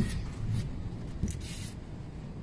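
Faint handling noises as a hand picks up a metal timing-belt tensioner pulley from a carpet: a few brief scratchy scuffs.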